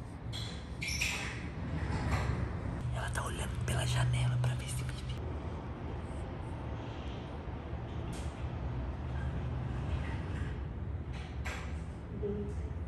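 Quiet whispering with a few clicks and rustles, over a steady low hum.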